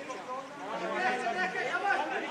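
Several voices talking over one another: ringside crowd chatter, getting louder after about half a second.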